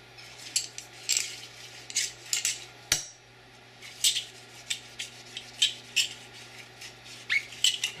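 A metal cleaning rod with a bore-polish cloth on its tip worked through a .45 ACP pistol barrel: irregular light metal clicks and scrapes as rod and barrel knock together, with one sharper click about three seconds in.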